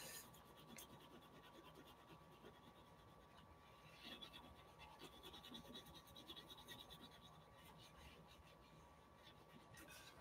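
Faint scratching of a Pentel oil pastel scribbling back and forth on drawing paper in many quick short strokes.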